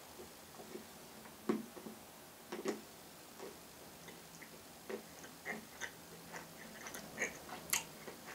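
Faint chewing of a Cadbury Caramel Egg, milk chocolate with a soft caramel filling, with irregular small mouth clicks, the loudest about a second and a half and two and a half seconds in.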